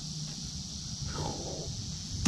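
Foam rocket glider shot from a stretched rubber band, a soft, brief whoosh about a second in, over a steady high insect drone.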